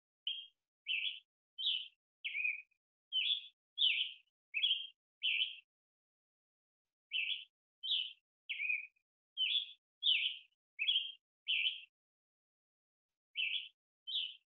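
A bird calling in short, evenly spaced chirps, about one and a half a second: two runs of about eight chirps with a pause of a second and a half between, and a third run starting near the end.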